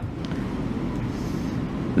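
Steady low rumble of background room noise, with a faint click about a quarter second in.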